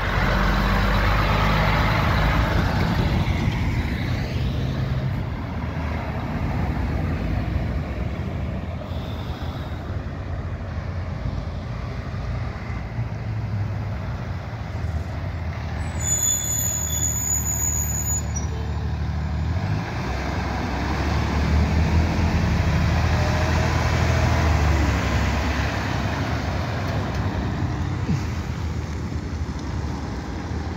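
Diesel trucks driving through a roundabout. A semi tractor-trailer's engine runs loud and close at the start and fades as it goes by. Then a dump truck towing an excavator trailer comes around, its engine loudest about twenty seconds in, with a brief high squeal a few seconds before that.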